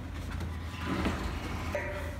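A large wooden staircase being tipped over by hand: a low rumbling scrape of wood against the plywood and floor coverings, over a steady low hum.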